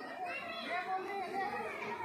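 Children's voices at play, several calling and chattering over one another.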